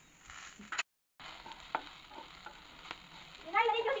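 Okra frying in a pan with a low sizzle, with a few light clicks of a spoon against the pan as powdered spices are added and stirred in. The sound cuts out briefly about a second in. Near the end a louder, wavering, voice-like pitched sound comes in.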